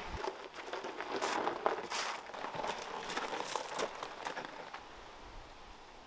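Footsteps crunching on gravel, irregular and fading away over the last couple of seconds.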